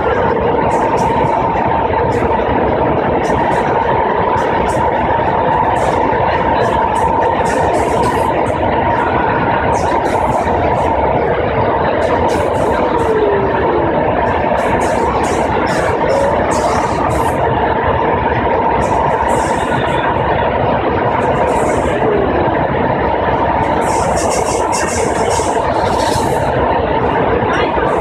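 BART rapid-transit car running at speed: a loud, steady rumble and hiss of wheels on track, with a steady whine through it. There are a few short falling squeals, one about thirteen seconds in.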